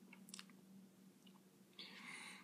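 Near silence with a few faint wet lip smacks from tasting a mouthful of beer, then a soft breath out near the end.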